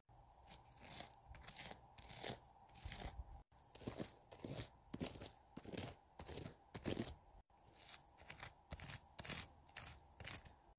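Gravel and small stones scraped and pushed aside by hand-moved plastic toy figurines to mimic animals digging: a faint, irregular run of short crunching scrapes, about two a second.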